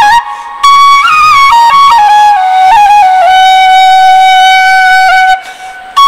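Bansuri (bamboo transverse flute) played solo, a slow melody: after a brief breath it steps through a few notes, then holds one long note, breaking off for another breath near the end.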